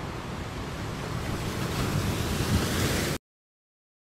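Sea waves breaking and washing in, growing slightly louder, then cut off abruptly a little after three seconds in.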